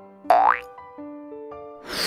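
Cartoon sound effect over light children's background music: a quick rising boing about a third of a second in. A loud swishing burst of noise starts just before the end.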